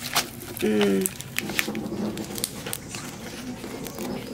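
Banana leaves crinkling and crackling as hands handle them to turn an omelette over in a pan, with many small sharp clicks. A short hum from a voice comes just before a second in.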